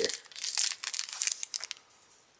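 Foil trading-card booster-pack wrapper crinkling as it is handled, a dense crackle that stops about a second and a half in.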